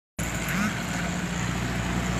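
Steady hum of a vehicle engine running nearby over street background noise, with faint voices in the distance.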